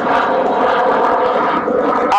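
A steady, pitched drone rich in overtones, held unchanged for nearly two seconds and thinning out just before the end.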